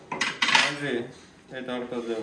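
A quick cluster of metallic clinks and knocks in the first second, as metal parts of a field-stripped Kalashnikov-type rifle are handled on the table.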